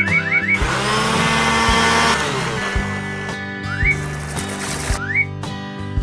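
Cartoon sound effects over steady background music: a quick run of rising, whistle-like zips as strawberries drop into a blender, then the blender whirring for about a second and a half. Later come a thinner burst of noise and two more single rising zips.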